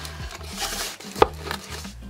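Corrugated cardboard mailer box being opened by hand, its lid lifting with cardboard rubbing and scraping, and one sharp tap about a second in.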